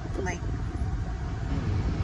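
Steady low rumble of a car heard from inside the cabin, under one short spoken word near the start.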